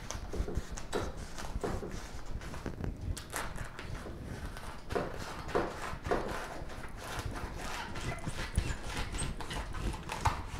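Kitchen knife cutting through a tough raw artichoke on a wooden cutting board: irregular clicks and knocks as the blade works through the leaves and strikes the board.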